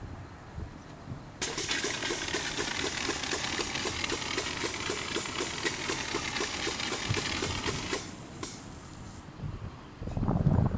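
Macaw compressed-air-foam backpack discharging pepper-spray foam through its hand-held nozzle: a hissing spray with a rapid, even pulse. It starts about a second and a half in and cuts off about eight seconds in.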